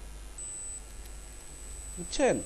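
Background hum and hiss of a voice recording, with a faint high-pitched steady tone for a moment about half a second in.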